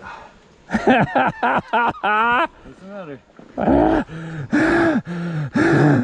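A man's voice calling out loudly in drawn-out, sing-song syllables, with a wavering, quavering note about two seconds in.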